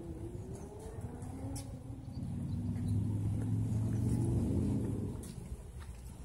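A motor vehicle passing by: a low engine and road rumble that swells about two seconds in, is loudest in the middle, and fades away before the end.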